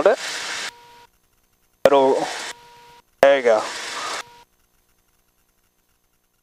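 Three short bursts of voice over the aircraft headset intercom. Each switches in with a sharp click and cuts off abruptly after a brief steady tone, with dead silence in between and no engine sound. The audio then goes completely silent from about four and a half seconds in.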